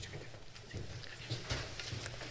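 Scattered knocks and rustling as a man handles his laptop and pulls his coat off a chair, with a louder knock about one and a half seconds in.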